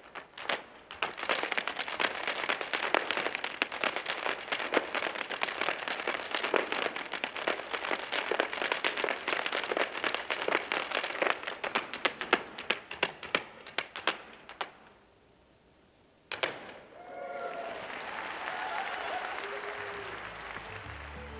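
Irish dance hard shoes of a line of dancers beating out rapid, dense clicking steps on a stage floor, without music, for about fifteen seconds, then stopping abruptly. After a short silence, a single sharp knock, then a few seconds of applause.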